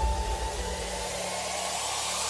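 Electronic background music at a build-up: the bass and beat drop out, leaving a steady hiss of white noise that slowly grows louder as a riser toward the drop.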